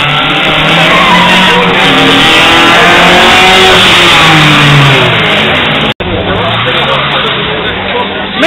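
Classic Ford Escort engines revving hard as the cars drift through the corners, their pitch rising and falling. It is loudest in the middle as a car passes close, and the sound breaks off for an instant about six seconds in.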